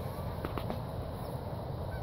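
Quiet outdoor ambience: a steady low background rumble, with a few faint clicks about half a second in.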